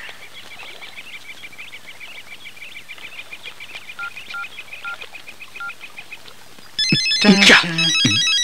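Small birds chirping rapidly and quietly, with a few short whistled notes. About seven seconds in, an electronic mobile-phone ringtone starts and carries on, with a man's voice over it.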